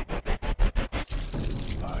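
A rapid stuttering pulse from the film's soundtrack, about seven choppy beats a second, cutting off suddenly about a second in; then a man's voice begins speaking.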